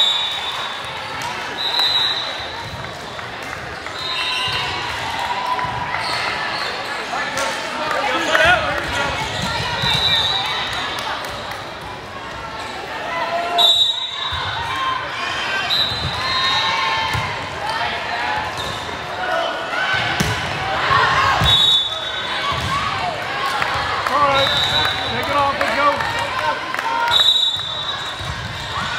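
Indoor volleyball play in a large, echoing gym. Short high squeaks, most likely sneakers on the court, come every few seconds, with sharp knocks of the ball being hit and a steady background of many voices calling and chatting.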